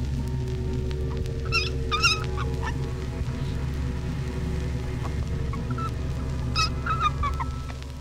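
Newborn red fox cubs squeaking in short high calls, a pair about a second and a half in and another pair near the end, over a steady low music drone.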